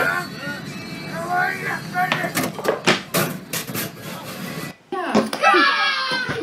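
Voices from a video clip, then a run of sharp knocks about halfway through. After a brief gap, another voice begins near the end.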